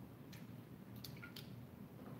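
Faint sounds of a person drinking from an aluminium can: a few soft clicks and liquid sounds as they swallow.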